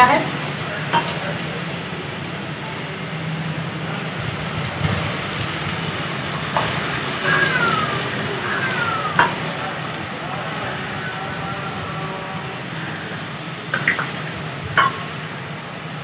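Masala and browned onion sizzling steadily as they fry in oil in a steel kadai over a wood fire, with a few sharp clicks.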